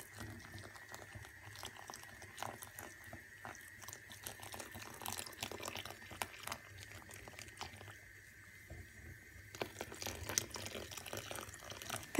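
Wooden chopsticks stirring water into flour in a bowl to make batter: faint wet stirring with scattered small clicks, dropping away briefly about eight seconds in.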